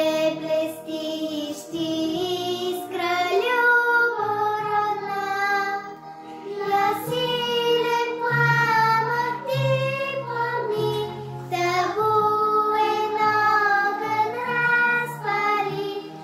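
A young girl singing a slow Bulgarian song in Bulgarian, holding long notes, over sustained low accompaniment notes.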